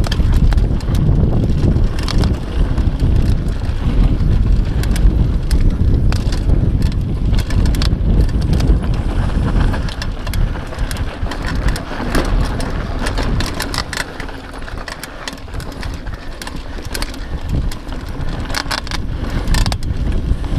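Mountain bike riding down a dry dirt trail: wind rumbling on the microphone, tyres running over loose dirt, and the bike rattling over bumps in frequent sharp clicks. It eases a little past the middle and picks up again near the end.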